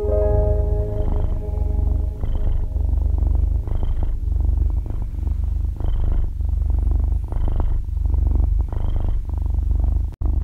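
A cat's purr, a continuous low rapid rumble that swells and eases in a breathing rhythm about once a second, under soft piano notes that fade out in the first moments.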